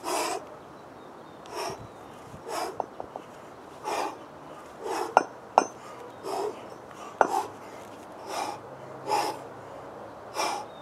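Hard, forceful breathing of a man working two 24 kg kettlebells in a continuous complex: a sharp exhalation about once a second. A few sharp clicks come in the middle.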